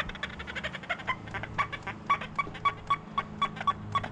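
XP Deus II metal detector set to 40 kHz, giving a run of short pitched beeps, uneven at first and then about four a second at one pitch. It is chatter from electromagnetic interference, not a target signal.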